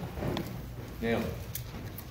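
Mostly speech: a man says a single word about a second in, over a steady low hum, with one sharp click just after.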